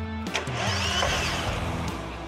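Starter motor cranking a Chevrolet Astra engine that does not fire, with a steady whine. The engine is seized after standing with water in it, and only the starter breaks it free. Background music plays over it.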